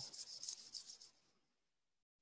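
Faint scratchy rubbing close to the microphone, a run of soft rasps that dies away about a second in.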